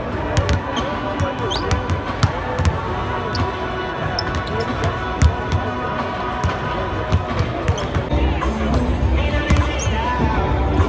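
Basketballs bouncing on a hardwood court, with repeated sharp knocks of the ball on the floor and in players' hands. Arena music plays steadily underneath, with voices in the background.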